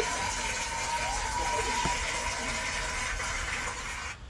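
Steady rushing, hiss-like noise with a faint steady high hum, cutting off suddenly at the end.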